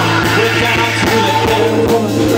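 Live punk rock band playing loudly: electric bass holding a low note, electric guitar, and a drum kit keeping a steady beat.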